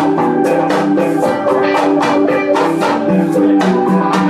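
Live band music played loud: a keyboard playing held chords and melody over a fast, steady percussion beat.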